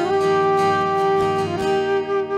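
Flute holding one long note, briefly broken about one and a half seconds in and then held again, over a strummed acoustic guitar.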